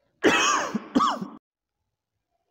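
A man clearing his throat: two quick bursts, one right after the other.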